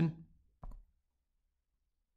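A single soft tap of a stylus on a tablet screen about half a second in, as handwriting begins; otherwise near silence.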